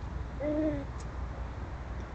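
A bird's single short, low hooting call about half a second in: one note that rises and then falls slightly in pitch, heard over a steady low rumble.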